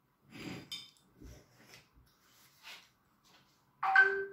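Hands handling a paper notepad clamped in metal bulldog and binder clips on a cutting mat: a few soft scrapes and light knocks, with a short bright metallic click about three-quarters of a second in. A voice starts just at the end.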